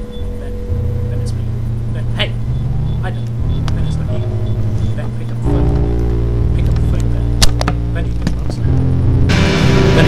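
Experimental noise music: low sustained drones that shift pitch in steps, dotted with scattered clicks and a sharp crack about seven and a half seconds in. Near the end a sudden wash of harsh noise breaks in.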